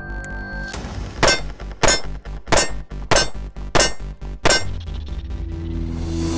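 Six pistol shots from a Wilson Combat-built Bravo Company Gunfighter 1911, fired at steel targets in an even string about two-thirds of a second apart. Background music plays under the shots.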